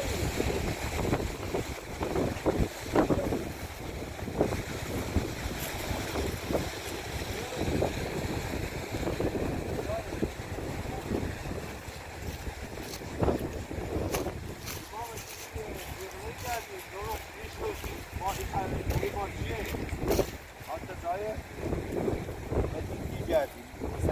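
Wind buffeting the microphone outdoors: a continuous, gusting low rumble, with faint voices and small pitched sounds in the background.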